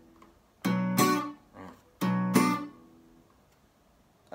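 Acoustic guitar strumming a reggae beat pattern: two chords struck a little over a second apart, each stroke quickly damped after about half a second. A faint muted stroke falls between them.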